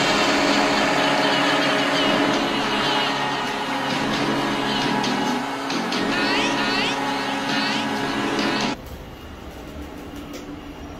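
A loud intro sting of music and sound effects, with several sweeping glides near the middle. It cuts off suddenly about nine seconds in, leaving quiet room ambience.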